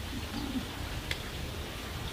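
A short, soft, low coo-like call, followed by a faint click about a second in.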